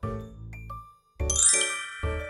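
A sound-effect sting: a low note fades out, then after a short gap a bright, bell-like chime rings with many high overtones.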